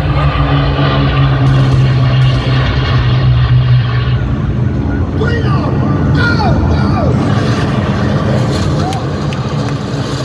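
Concert intro tape played loud over an arena PA: a steady low mechanical drone like an engine, under crowd noise. From about five seconds in, whistles and shouts from the audience rise over it.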